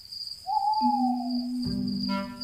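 Night ambience in a cartoon: an owl hoots once, a single falling call starting about half a second in, over steady cricket chirping, with a low held tone coming in under it.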